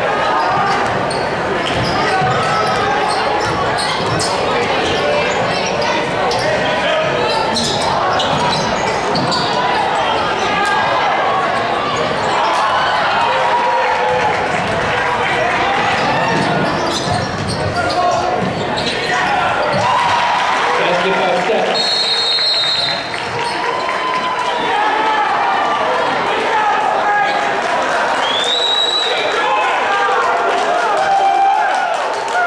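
Basketball game sounds in a large, echoing gym: the ball bouncing on the hardwood floor and a steady chatter of crowd voices. A short high referee's whistle sounds near the end, when play stops.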